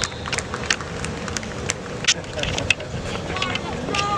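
Distant voices and shouting from a youth football game, with a run of sharp clicks, about seven scattered over the first three seconds.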